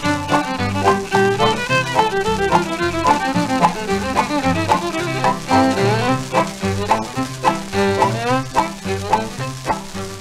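A 1946 78 rpm record of a western novelty song, playing an instrumental break between sung verses: a sliding melody line over a steady, bouncing bass beat.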